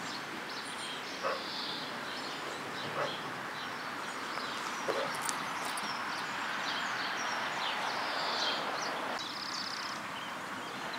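Outdoor birdsong: many small birds chirping over a steady background hiss, with a few louder short calls about one, three and five seconds in.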